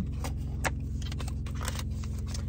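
A cardboard candle box being opened and its tissue-paper wrapping handled: a few sharp clicks and crinkles, one about halfway and several more near the end. Under it, a steady low hum in the car cabin.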